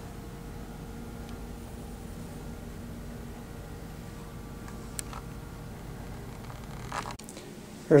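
Steady low background hum with faint steady tones, and a single soft click about five seconds in; the hum drops away suddenly near the end.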